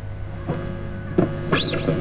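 Vintage Japanese electric guitar through an amplifier, played lightly: a few soft plucked notes over a steady low hum. Near the end, one note glides up in pitch and back down.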